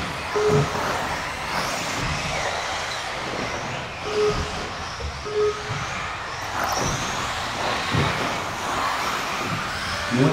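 Electric 1/10-scale 4wd RC buggies racing on carpet: continuous motor and drivetrain whine that rises and falls as the cars accelerate and brake, with occasional knocks from cars landing or hitting the track. Three short beeps sound, near the start and twice around the middle.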